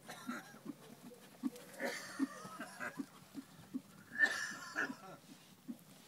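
A ridden horse in trot making short sounds about three times a second in time with its stride, with two louder, longer blowing snorts about two and four seconds in.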